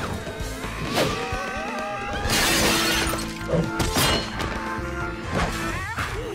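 Background music with glass display cases shattering and crashing over it: several sharp crashes, the biggest and longest a little over two seconds in.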